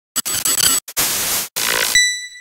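Static-like electronic noise from a logo intro sound effect, chopped into about four bursts with short silent gaps. At the very end it cuts off into the start of a bright, ringing ding.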